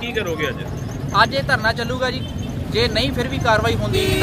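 A man speaking in the street over a steady low rumble of traffic.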